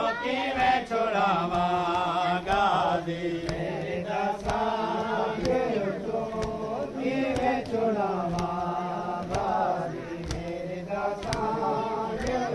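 Group of men chanting a noha, a Shia mourning lament, in unison, with sharp strikes recurring through the chant.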